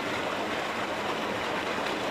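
Water gushing from a large pipe outlet into a water tank, a steady rushing sound with the churn of the water surface.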